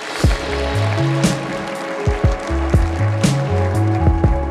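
Music with a steady drum beat and deep bass notes, starting sharply at the beginning.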